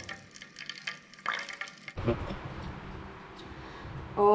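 Faint sizzle of melted ghee and margarine in an aluminium mess tin over a portable butane stove. About two seconds in, a steady low rushing noise starts.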